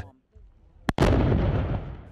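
An explosion about a second in: a sharp crack, then a loud rumbling blast that fades away over the next second.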